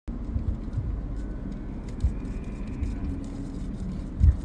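Vehicle engine idling: a steady low rumble with a faint even hum.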